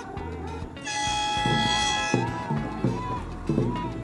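A starting horn sounds for about a second and a half, then the dragon-boat crews shout a rhythmic chant in time with their paddle strokes, about one shout every two-thirds of a second.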